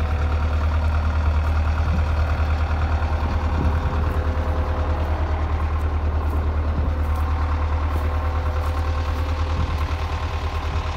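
A large engine idling steadily, a low, even throb that does not change pitch.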